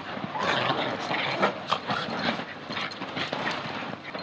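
Two Bichon Frise dogs play-fighting, making a run of short, irregular play vocalizations that get louder about half a second in.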